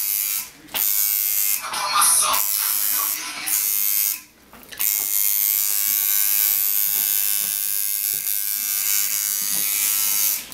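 Tattoo machine buzzing steadily as it works a portrait into the skin of a forearm. It cuts out briefly twice, about half a second in and again around four seconds in.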